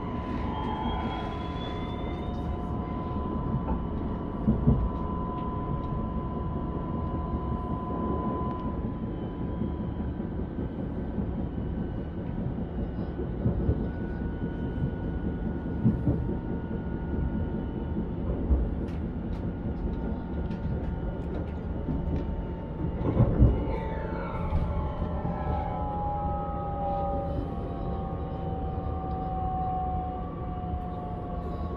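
Passenger train running on the rails, heard from inside the carriage: a steady rumble with a held whine and a few sharp knocks. From about 24 seconds in, several whining tones fall slowly in pitch as the train slows for a station.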